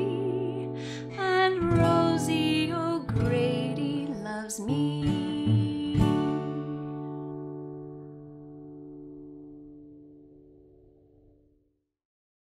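Acoustic guitar strummed through the closing bars of a song, ending on a final strum about six seconds in that rings out and slowly fades to silence just before the end.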